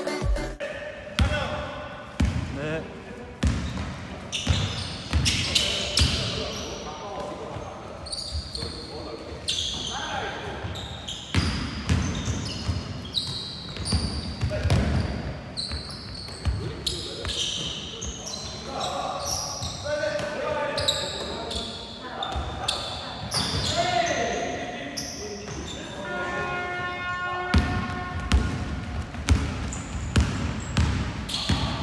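Basketball bouncing repeatedly on a hardwood gym floor as players dribble, with players' shouts, echoing in a large hall.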